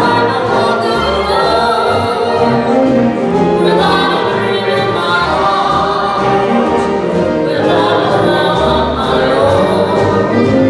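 Live 1930s–40s style dance band playing a slow number with a singer, the voice gliding over the band.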